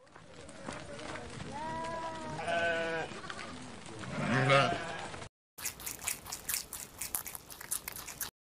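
Sheep bleating: a few wavering calls in the first five seconds. After a short break, rapid crunching clicks follow as rabbits chew on green stalks.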